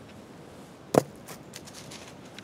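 A thrown disc golf disc striking the metal chain basket about a second in: one sharp clank, followed by a few light rattles as the chains settle.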